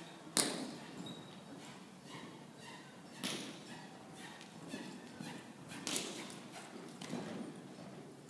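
A horse cantering loose on soft arena footing, its hoofbeats faint, with a few sharp thuds; the loudest comes near the start, others about three and six seconds in.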